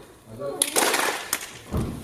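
Indistinct voices, with a short hissing noise lasting about a second near the middle and a low bump near the end.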